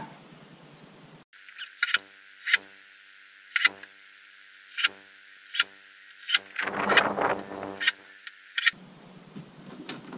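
Cordless drill/driver (DeWalt 20V) driving a screw into a door frame: a series of short trigger bursts of the motor, then a longer run of about a second about two-thirds through.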